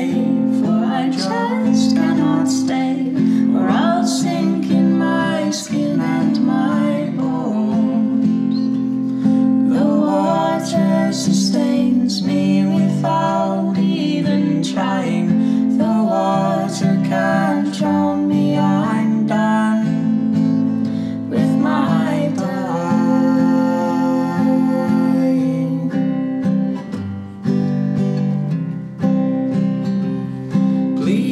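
A man and a woman singing a folk duet together to an acoustic guitar accompaniment.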